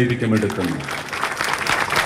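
Audience applause, many hands clapping, thickest in the second half. A man's amplified voice trails off in the first half-second.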